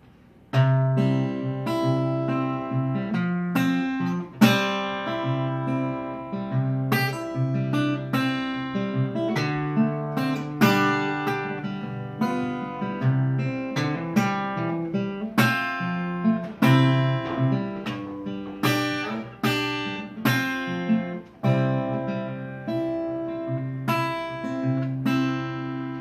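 Solo acoustic guitar playing an instrumental introduction: strummed chords and picked notes ringing, starting about half a second in.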